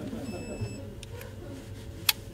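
Faint background voices, with a short high electronic beep about a quarter of a second in and a couple of small clicks about a second in.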